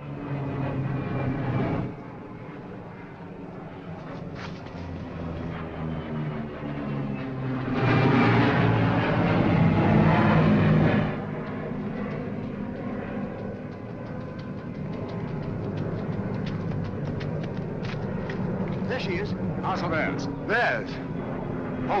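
Propeller aircraft's piston engine droning overhead, loudest about eight to eleven seconds in as it passes low, then carrying on steadily as the plane comes in to land.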